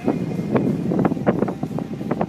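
Wind blowing across a phone's microphone, a loud, uneven buffeting in gusts.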